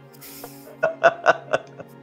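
Soft background music holding steady tones, with a brief breathy hiss near the start and a cluster of short bursts of laughter about a second in.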